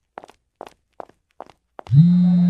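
Footsteps on a hard floor, about two to three steps a second. Right at the end a loud, low, steady buzz from a phone starts.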